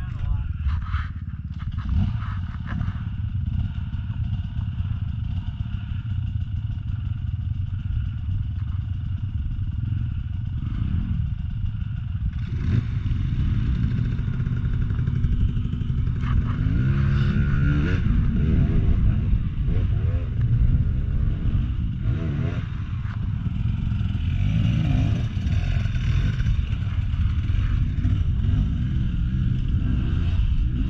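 Dirt bike engines running: a steady idle throughout, growing louder about halfway through, with the throttle blipped and revved up in a rising whine a little later as a bike works over rocks.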